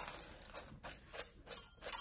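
Sodium hydroxide pellets rattling out of a plastic bottle and clicking onto a glass watch glass, in a few short bursts, the loudest near the end.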